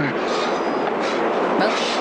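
Steady mechanical rumble and clatter on the film's soundtrack.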